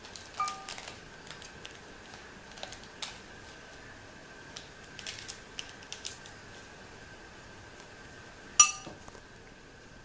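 Scissors snipping open a plastic jelly packet, with scattered short snips and crinkles of the packet. There is a ringing clink just after the start and a much louder one near the end.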